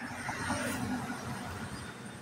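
Steady road noise of a moving vehicle heard from inside it: a low rumble under an even hiss.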